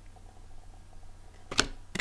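Two sharp clicks about a third of a second apart, late in an otherwise quiet stretch, from tarot cards being handled and set down on a cloth-covered table.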